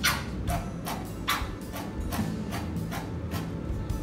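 Background music, over a string of irregular sharp spurts and pops as acrylic paint is squirted in bursts from a squeeze bottle, spattering onto a canvas.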